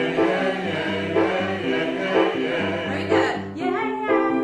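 Grand piano playing a bouncy accompaniment while a roomful of audience voices sings along together, the response half of a call-and-response; a single female voice comes back in near the end.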